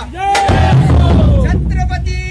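A dhol-tasha ensemble of large barrel dhol drums and tasha crashing in together about half a second in, a loud dense burst of drumming that eases after about a second, over people shouting.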